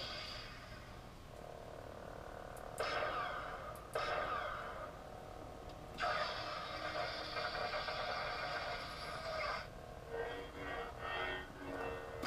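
Lightsaber sound-font effects played through the replica saber's own speaker by its TeensySaber V3 sound board: the blade igniting, then a steady hum with two brief louder swells about three and four seconds in, and a louder effect held for about three and a half seconds from roughly six seconds in.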